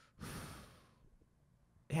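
A person's breathy sigh into a close microphone, about half a second long, then near silence.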